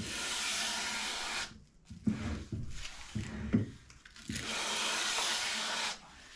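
Coarse sandpaper wrapped round a flat stick being rubbed by hand across a planed timber face. There are two long, even strokes, one at the start and one near the end, with softer rubbing between them. It is a light scuff that opens up the grain and breaks up the plane's burnishing, so that glue can take.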